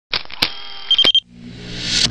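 Sound effects of an animated logo intro: a steady hiss with a faint high tone and several sharp clicks, then, after a short break, a whoosh that swells louder over a low hum and peaks near the end.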